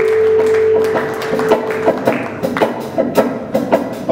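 Group hand clapping, a loose run of claps several a second, over a steady held note that stops about two seconds in.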